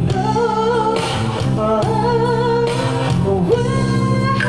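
Live pop ballad: a lead vocal sung into a microphone, with held notes and vibrato, over strummed acoustic guitar and band accompaniment.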